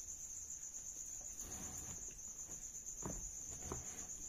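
Crickets trilling steadily in the background, a high continuous pulsing note. A few soft rustles and knocks come in the second half as the notebook and pen are handled.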